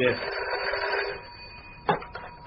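Telephone bell ringing for about a second, then a sharp click near the end.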